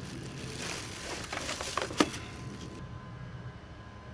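Plastic air-pillow packing and cardboard box rustling as a CB radio is handled inside the box, with a sharp click about two seconds in; the rustling stops near the end, leaving a steady low background rumble.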